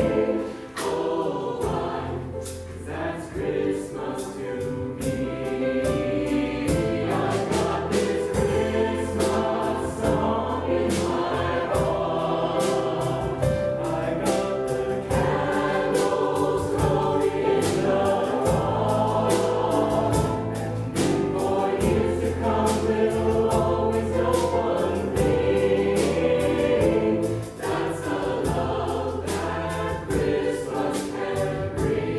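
Mixed choir of men's and women's voices singing in parts, backed by a bass guitar holding low notes and drums keeping a steady beat.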